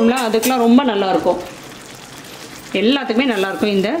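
A woman speaking in two short phrases, with a faint sizzle from the gravy simmering in the pan in the pause between them.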